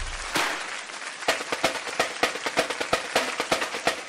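Percussion music: a noisy wash dies away over the first second, then crisp, quick drum strokes in a busy, uneven rhythm, as from a drum line.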